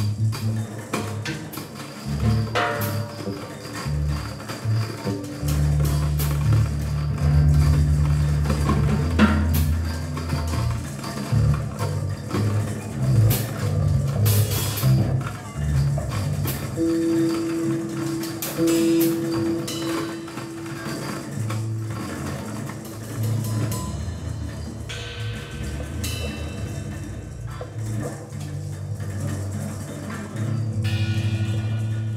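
Live free-improvised experimental rock from an electric guitar, bass and drum kit trio: heavy, shifting low bass notes under scattered drum and cymbal hits, with a held higher note about halfway through.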